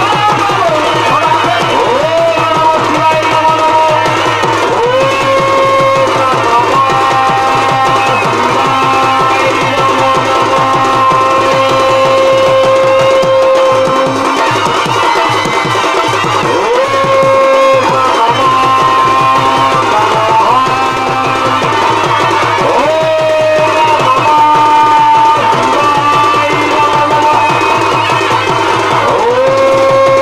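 Live Chhau dance music: a shehnai plays a melody of long held notes that slide up into each new pitch, over fast, steady drumming on dhol and dhamsa drums.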